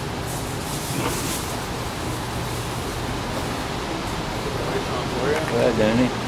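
Steady low hum and hiss of an indoor pool hall's ventilation, with a man's "wow" at the very end.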